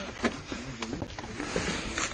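A man's muffled voice speaking Russian in a phone recording, with a couple of faint clicks of handling noise.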